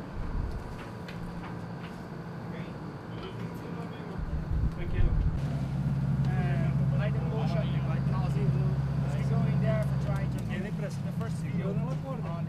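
Boat engine running with a low, steady drone that comes in about five seconds in and drops away about ten seconds in. People talk over it, with a few knocks.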